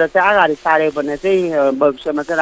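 Only speech: one person talking steadily, with no other sound.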